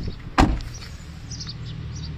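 A Tata Vista's car door shut once with a single sharp slam, near the start, over a steady low hum.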